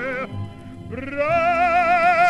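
Operatic tenor voice singing with a wide vibrato over accompaniment: one held note ends about a quarter-second in, a short break follows, and about a second in a new note slides up and is held.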